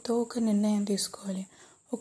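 Speech only: a narrator talking, with a short pause near the end.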